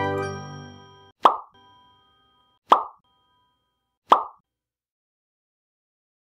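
Outro music fading out, then three short plop sound effects about a second and a half apart, each followed by a brief ringing tone.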